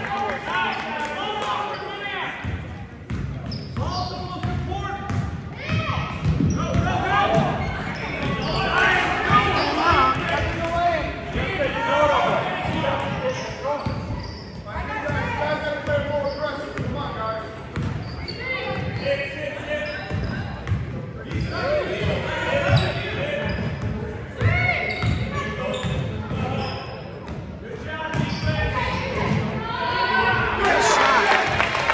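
A basketball dribbled and bounced on a hardwood gym floor, with many voices calling out from the bleachers and court, all echoing in a large gymnasium.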